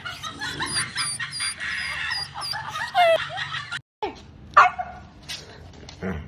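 Puppy yipping repeatedly in short high yelps, with a longer falling yelp about three seconds in. After a short break, one loud dog bark.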